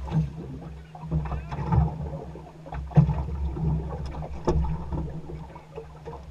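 Choppy water knocking against a small fishing boat's hull over a steady low hum and rumble, with several sharp knocks, the loudest about three seconds in.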